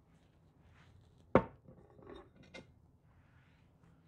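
A single sharp knock of kitchenware about a second in, then faint rustling and a lighter tap, as chopped dill is tipped from a cut-glass dish into an enamel mixing bowl.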